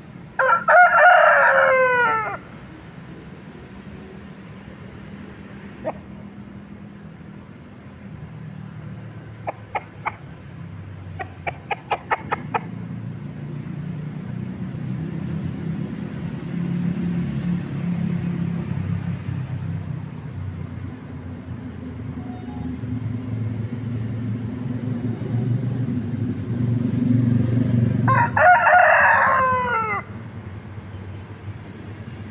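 A Bangkok gamecock crowing twice: one loud crow of about two seconds just after the start, and another near the end. Between the crows there is a low, steady rumble and a few short, sharp clicks.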